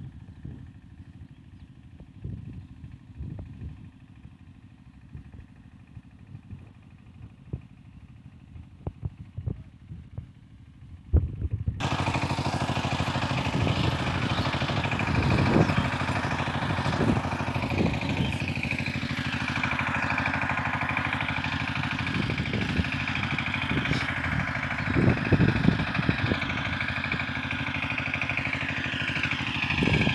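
A two-wheel power tiller's engine running steadily. About a third of the way in, a much louder rushing noise spread across all pitches starts suddenly and covers it for the rest of the time.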